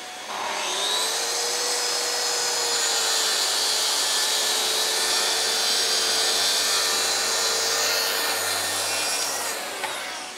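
Bosch track saw spinning up and ripping a long straight cut through an MDF sheet along its guide rail, running steadily under load, then winding down near the end.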